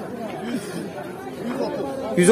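Background chatter: several people's voices talking at a moderate level, with no single voice standing out.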